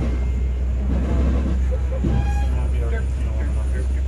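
Safari ride vehicle driving along its track, a steady low rumble of engine and road noise, with faint voices of other riders about halfway through.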